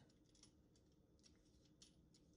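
Near silence with a few faint, short scrapes and ticks: a vegetable peeler stroking down a jumbo asparagus stalk, shaving off the stringy outer skin.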